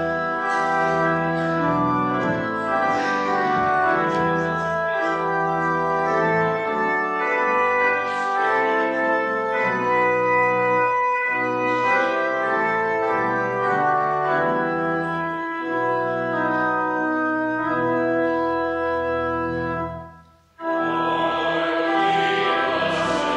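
Organ playing the introduction to a hymn in held, changing chords. It breaks off briefly near the end, then starts again as the hymn itself begins.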